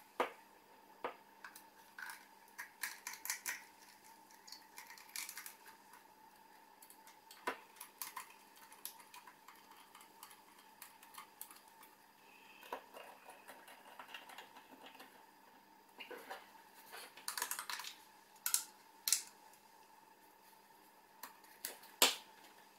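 Small screwdriver driving screws into a plastic instrument case, with faint, scattered clicks and scrapes of the driver and the case being handled. The clicks come thicker and a little louder about three-quarters of the way through.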